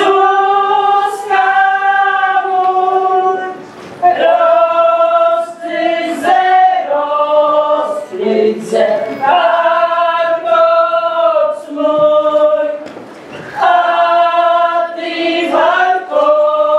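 A group of women singing a traditional Polish folk song together, in long drawn-out phrases of about four seconds, each broken by a short pause for breath.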